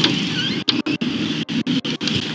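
Rustling, scraping noise picked up by a police body-worn camera as the wearer moves, broken by many brief dropouts.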